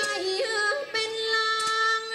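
Thai classical music for a khon masked dance: a high voice sings long, ornamented held notes that step and bend in pitch, with a couple of sharp strikes.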